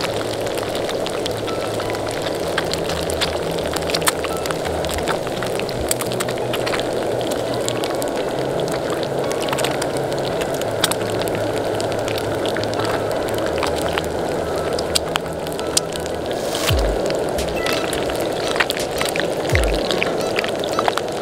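Background music with a steady low bass line plays over hot cooking oil bubbling and crackling, with many sharp, scattered pops, as whole raw eggs fry in it.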